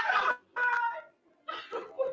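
Men yelling wordlessly in emotional release as a nerve-racking match ends, three long, high shouts in quick succession.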